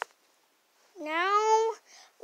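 A short click at the start, then a cat meows once, about a second in: one drawn-out call that rises at first and then holds.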